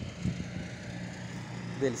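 Steady low hum of an engine running, unchanged throughout, under a pause in a man's speech; he speaks a word just before the end.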